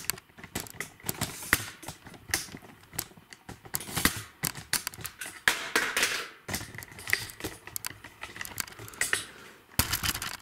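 Irregular clicks, knocks and rustling close to the microphone: handling and movement noise from someone moving among metal racking with a camera in hand.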